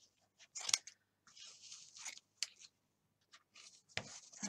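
Scissors snipping through wool batts wound on cardboard, cutting a pom-pom tail open along its side: several separate snips with short gaps between.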